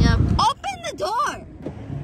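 A young woman's high-pitched voice calling out in rising-and-falling swoops without clear words, over a low rumble in the first half second.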